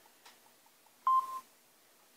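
A single short beep about a second in, with a click at its start, from a QR code scanner app on an iPhone, signalling that the code has been read.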